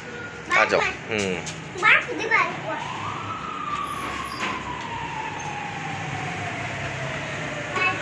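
A siren wailing: its pitch climbs quickly about three seconds in, then slides slowly down over the next five seconds.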